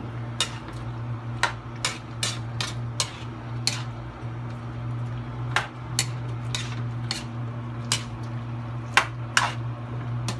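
Metal ladle stirring pork stewed in blood in a steel wok, scraping and clinking against the pan about once or twice a second at an irregular pace, over a steady low hum.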